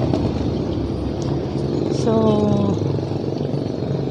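Steady street traffic noise: a continuous rumble and hiss of passing vehicles.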